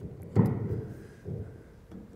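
Microphone handling noise as a handheld microphone is pushed into the clip of its stand: a loud thump about half a second in, then fainter knocks and rubbing.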